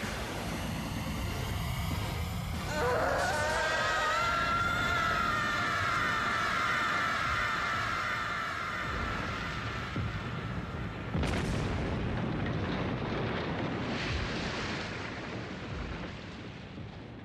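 Theatrical sound effects for a magic attack: a loud, rumbling, explosion-like roar. Over it, from about three seconds in, a long drawn-out wail rises and then slowly sinks. A second sudden burst comes about eleven seconds in, and the sound fades near the end.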